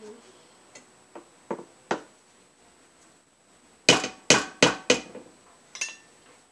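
A spoon rapped against the rim of a stainless steel stockpot to knock mashed potato off it: a few light taps, then four loud, sharp metallic knocks with a short ring about four seconds in, and one more just before the end.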